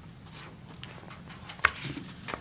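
Small faint taps and rustles from handling at a lectern, with one sharper click about one and a half seconds in, over a low steady room hum.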